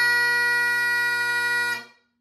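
Great Highland bagpipe holding the final note of a 2/4 march over its steady drones, then chanter and drones cutting off together near the end, finishing the tune.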